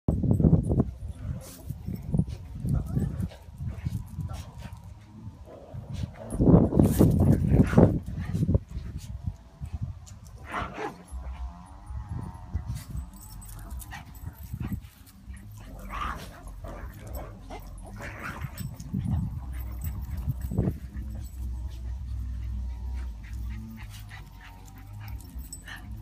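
A Boston Terrier giving short, intermittent vocal sounds, mixed with a person's voice and a low rumble.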